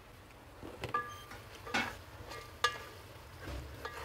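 Four or five short clinks and knocks of a glass pot lid and a wooden spatula against an aluminium cooking pot, two of them ringing briefly, as the pot of onion-tomato masala is uncovered and stirred.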